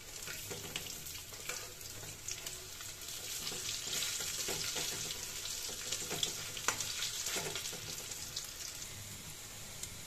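Shrimp and lentil fritters sizzling and crackling in hot oil in a steel kadai, with short scrapes and clinks from a metal spatula turning them.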